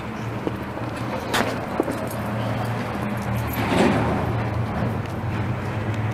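City street traffic noise at night: a steady low hum, with a vehicle passing that swells and fades about four seconds in, and a sharp click just under a second and a half in.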